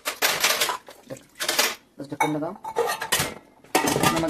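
Stainless-steel pressure cooker and lid clattering as they are handled: two short bursts of metal clanking in the first two seconds.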